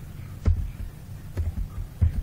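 A few separate keystrokes on a computer keyboard, each a short click with a dull thud, as a word begins to be typed.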